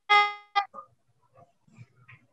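A short ringing ding that dies away over about half a second, followed at once by a brief second, shorter tone.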